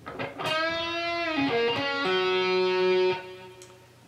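Electric guitar, a Squier Bullet Stratocaster tuned down a semitone, playing a slow lead lick from the B minor pentatonic box. A bent note is let down about a second in, a short note follows, then a note is held for about a second and stopped abruptly just after three seconds in.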